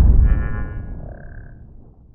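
The tail of a logo-intro sound effect: a deep boom dying away steadily, with a short high ringing tone over it during the first second and a half.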